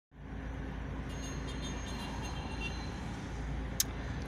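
Hummer H3's engine running steadily, a low hum heard from inside the cabin, with a short sharp click near the end.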